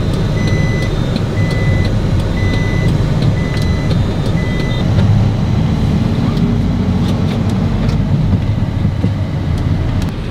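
Engine and road rumble inside a van's cabin as it pulls away, with an electronic warning beeper sounding a high beep about once a second, six times, then stopping about five seconds in.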